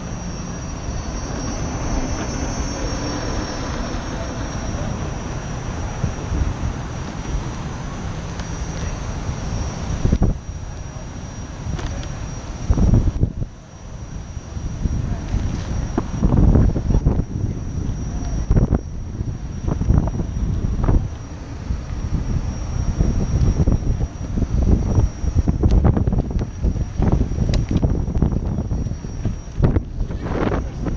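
Wind buffeting the microphone of a camera mounted low on a moving Gotway electric unicycle, mixed with the rumble of the wheel on pavement. The noise is fairly even at first, then turns into gusty low surges from about ten seconds in.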